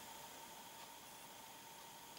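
Near silence: a faint, steady hiss with a thin, faint steady tone in it.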